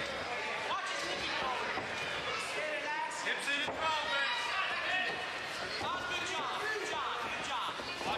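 Fight crowd shouting and yelling, many voices overlapping, with a few thumps of the fighters against the cage about halfway through.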